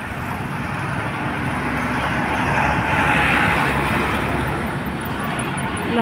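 Road traffic going by. A passing vehicle grows louder to a peak about halfway through, then fades.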